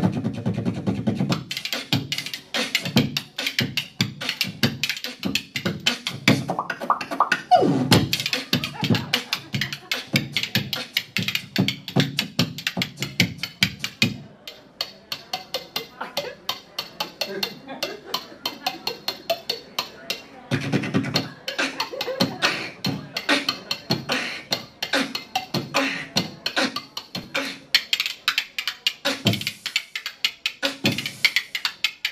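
Human beatboxing into a microphone, deep kick-like beats under fast clicking, with a pair of spoons played as rhythm percussion at the same time. The deep beats drop out for several seconds in the middle, leaving the quick clicking.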